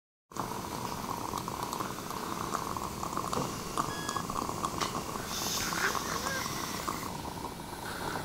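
Dental saliva ejector sucking steadily in a patient's open mouth, with a brief hiss about five and a half seconds in.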